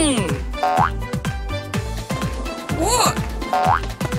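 Upbeat cartoon background music with a steady beat, overlaid by two cartoon sound effects about three seconds apart. Each is a tone that swoops up and down in an arc, followed by a short upward slide.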